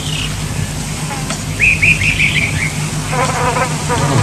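Bush ambience: a steady low buzz under birds chirping, with a quick run of about six descending chirps about halfway through and another short call near the end.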